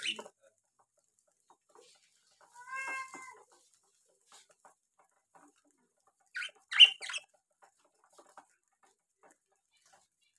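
Sparse bird calls: a short pitched call about three seconds in and a louder cluster of sharp chirps around the seven-second mark, with faint scattered ticks between them as seed is pecked from a bowl.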